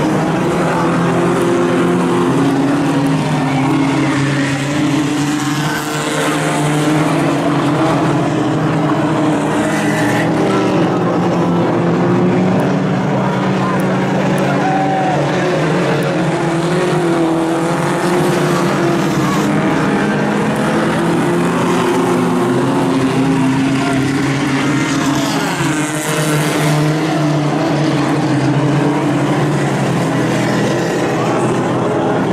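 Several Outlaw Tuners compact race cars running together around a dirt oval, their engines held at steady high revs, with the pitch wavering slightly up and down through the turns.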